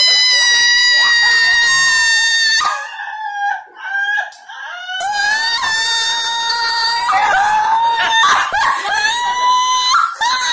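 A person screaming in long, high-pitched shrieks: one held for the first two and a half seconds, then another, wavering, from about halfway through to the end.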